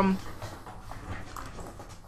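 The tail of a man's drawn-out hesitation 'um' right at the start, then faint, steady room noise over a video-call connection.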